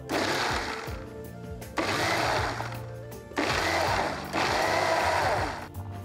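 Electric mixer grinder (mixie) running in four short pulses of about a second each, its blades churning a wet spice paste in the steel jar under a hand-held lid.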